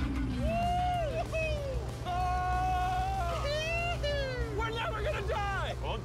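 Sports car engine revving hard, its pitch climbing, holding and then dropping several times as it accelerates, over a steady low rumble.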